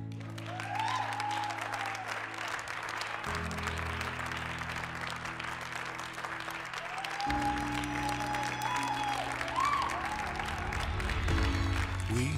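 A group of people applauding steadily over background music with sustained chords.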